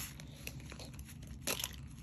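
Faint crinkling of a folded paper leaflet handled in the fingers, with one sharper rustle about one and a half seconds in.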